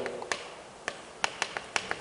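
Chalk tapping and clicking against a chalkboard while writing: about six sharp, irregular taps over quiet room tone.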